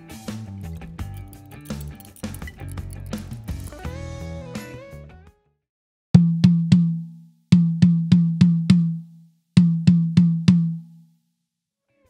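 Background music for about five seconds, then a Pearl Vision rack tom struck with a drumstick in three quick groups of three, five and four hits, each ringing briefly at one steady low pitch. This is the smallest tom just retuned a little lower on both heads, and it now sounds much better.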